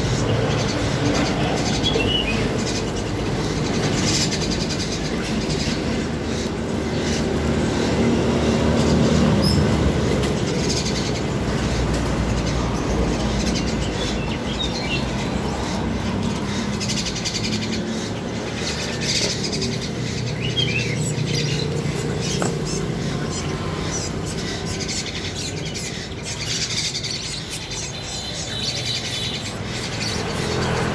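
Small caged birds chirping in short, scattered calls over a steady low background rumble.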